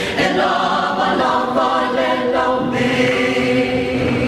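A choir singing a Samoan song (pese) in harmony, holding sustained chords that shift a few times.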